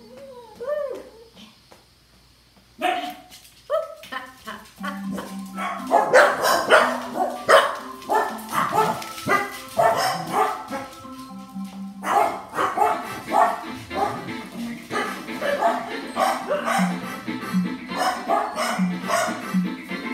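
A dog barking over music with a steady beat; the barking and music get loud from about three seconds in, after a short wavering cry in the first second.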